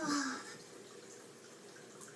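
A boy's voice trailing off in a short falling groan of pain in the first half second, after which only faint room hiss remains.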